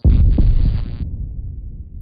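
A deep boom that hits suddenly and fades over about two seconds, a cinematic bass-impact sound effect, with a higher layer on top that cuts off suddenly about a second in.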